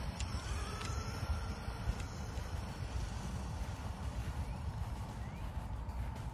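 Faint whine of a Losi Super Rock Rey 2.0's brushless electric motor as the RC truck drives off into the distance, rising over the first two seconds and then fading, over a steady low rumble.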